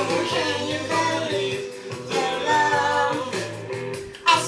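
A song playing: a voice singing over guitar and a steady bass line.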